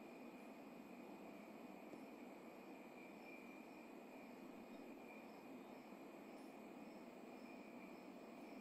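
Near silence: only a faint, steady hiss.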